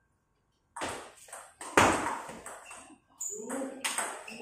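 A table tennis rally after a moment of silence: sharp clicks of the celluloid ball off bats and table, the loudest hit about two seconds in, with voices near the end.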